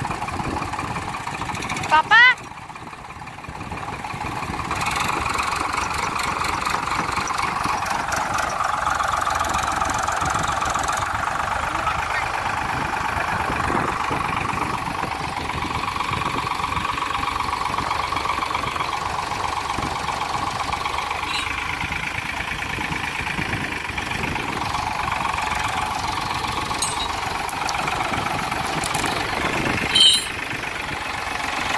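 Tractor diesel engines labouring under load while a Farmtrac 60 pulls a tractor stuck in deep mud; the engine note rises about four seconds in and stays up steadily. A short loud shout comes about two seconds in.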